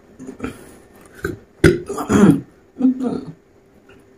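A man burping several times after drinking a fizzy apple soda: four short burps, the longest and loudest about halfway through.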